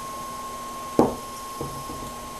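A single dull knock about a second in, as a glazed ceramic bowl is set down on a hard surface, followed by a fainter bump, over quiet room tone.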